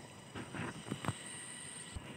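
Faint rustling and light handling noise, with a few soft taps about half a second and a second in, over quiet field ambience with thin steady high tones.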